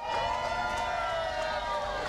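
A long horn blast: one steady multi-tone note that sags slightly in pitch and stops just before two seconds, over a low background rumble.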